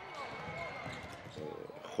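Handball being played on an indoor court: the ball bouncing on the floor, with faint voices echoing in the hall.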